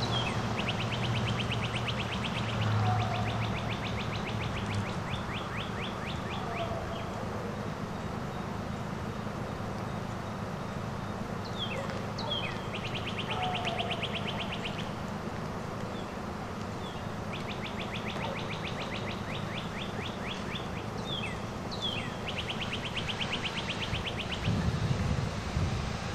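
A songbird singing a rapid, even trill several times, each trill led by a few sharp downslurred notes.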